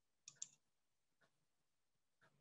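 Near silence broken by a faint, brief double click about a third of a second in and a fainter single click a little after a second.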